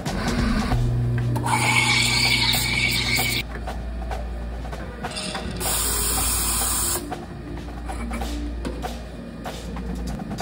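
Café espresso machine at work over background jazz: a pump buzz and a loud hiss about one and a half to three and a half seconds in, then a sharp, high steam hiss for about a second and a half around the six-second mark as milk is steamed.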